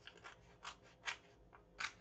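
Stiff, glued journal paper handled by hand: four faint, short crisp sounds, roughly half a second apart.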